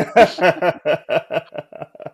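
Men laughing heartily, a quick run of short laughs that fades toward the end.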